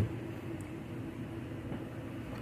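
A steady, low mechanical rumble with a faint hum running underneath, during a pause in the talking.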